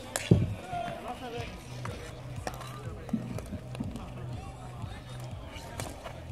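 A hockey stick striking the ball in a close-range shot on goal: one sharp crack about a third of a second in. Lighter clacks of sticks and play follow on the plastic-tile rink, under faint voices and a low steady hum.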